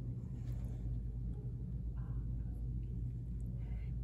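Room tone: a steady low hum, with a few faint soft rustles.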